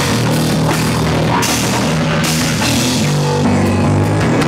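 A rock band playing live and loud, with a drum kit whose cymbals crash repeatedly, electric guitar and bass in a dense, heavy sound.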